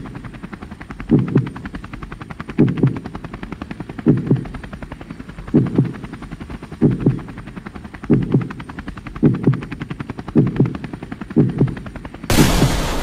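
Helicopter rotor chop as a sound effect, a fast steady beating, with a deep double thump about every second and a half that comes slightly faster toward the end.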